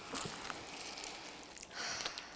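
A long sniff, breath drawn in through the nose against a handful of fresh basil leaves, with a soft rustle of the leaves; a second, shorter breath sound comes near the end.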